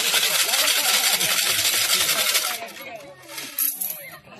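Coins rattling in a small metal tin shaken hard and fast, a dense metallic rattle that stops about two and a half seconds in, followed by a few lighter clinks.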